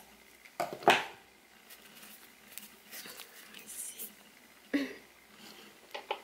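Scissors snipping through a strand of acrylic-type crochet yarn: one short, sharp cut about a second in.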